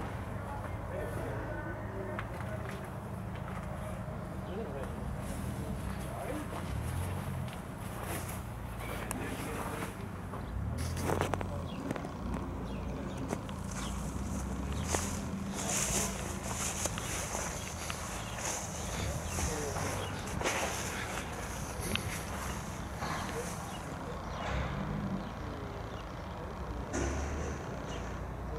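Indistinct voices in the background over a low steady rumble, with scattered light clicks and handling noise.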